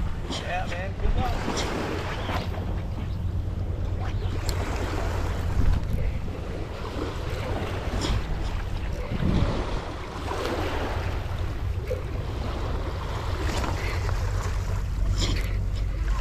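Wind rumbling on the microphone over a steady wash of water along the shore.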